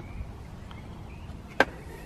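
A single sharp knock about one and a half seconds in, over faint steady background noise: something bumping inside the open back of a car.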